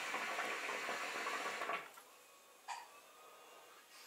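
A hookah being drawn through its hose: a steady bubbling from the water in the base lasts just under two seconds and then stops, leaving near quiet while the smoke is held.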